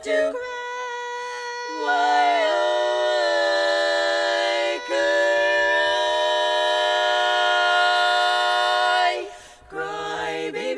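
Women's four-part barbershop quartet singing a cappella in close harmony. A chord gives way about two seconds in to a new one that is held for about seven seconds, with a brief dip near the middle, and it is released near the end.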